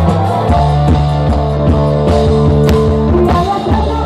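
Live dangdut koplo band playing, a dense mix with a steady beat of drum strokes and held bass notes.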